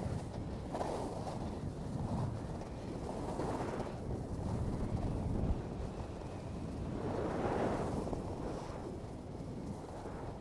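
Wind rushing over the microphone of a moving action camera on a ski run, mixed with the hiss and scrape of edges sliding over packed snow, swelling and easing several times through the turns.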